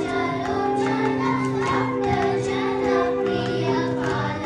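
A group of young girls singing a Carnatic song in unison, the melody bending between notes, over a steady drone and regular percussion strokes.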